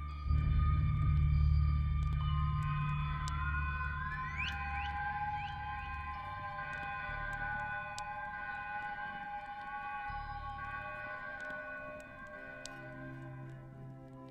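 Ambient music: a deep low drone under several long held high tones, with a few rising, gliding tones about four to five seconds in. The whole texture slowly fades.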